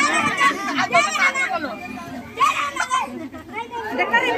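Lively chatter of a group of women and children talking over one another in high voices. It eases off briefly past the middle, then picks up again.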